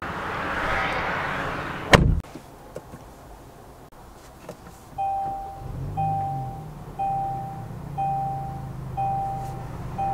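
A car door shuts with one solid thud about two seconds in. From about five seconds a two-note warning chime sounds once a second, the seatbelt reminder, while the 2025 Kia Sportage's 2.5-litre four-cylinder starts and settles into a steady idle.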